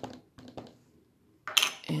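Light clicks and taps of clear stamps and the plastic plate of a stamp-positioning tool being handled, a few in the first half-second or so, then a brief rustle about a second and a half in.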